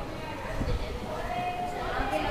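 Indistinct chatter of people in a large hall, with a few low knocks, like footfalls on a wooden floor, about half a second in.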